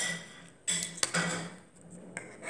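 Wrapper crinkling and small plastic clicks as a cake pop surprise toy is unwrapped by hand, in several short bursts.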